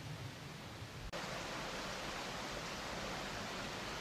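Steady, low hiss of outdoor background noise with no distinct events; its tone changes abruptly about a second in, at an edit.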